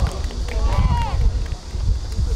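A player's short shouted call on a football pitch about a second in, carried over a steady low rumble of wind on the microphone.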